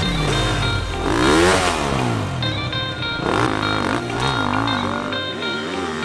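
Enduro motorcycle engine revving hard, its pitch rising and falling again and again as it works over a log obstacle, with background music playing over it.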